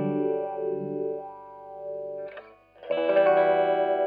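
Gibson Les Paul played through a Systech Harmonic Energizer clone filter pedal into a Marshall JCM800 combo at low volume. A held chord has its tone shifting as the pedal's knob is turned, then fades; about three seconds in a new chord is struck and left to ring.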